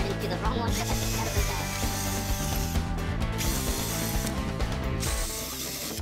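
Handheld electric drill boring a hole through a thin plywood board, the motor starting and stopping several times, over background music.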